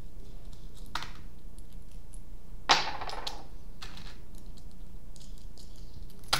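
Metal washers clinking and jangling as hands sift through a box full of them, with scattered light clicks and a louder clatter about three seconds in.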